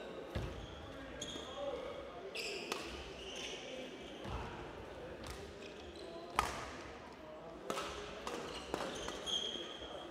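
Badminton rally in a hall: sharp racket strikes on the shuttlecock about every second or so, the loudest about six seconds in. Between the strikes come short high squeaks of court shoes on the floor and the thud of footfalls.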